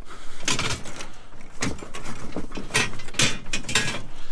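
Scrap metal clanking and rattling as pieces are set down into a pickup bed full of other scrap: several separate knocks and jangles spread over a few seconds.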